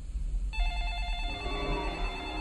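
Eerie ringing tones from a horror film playing on a television. A steady, high ringing starts about half a second in, and lower, wavering tones join about a second in.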